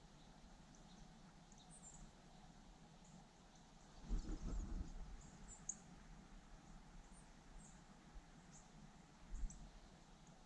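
Faint, scattered high chirps of small birds in a quiet swamp at first light. About four seconds in there is a low rumbling bump lasting about a second, and a shorter one near the end.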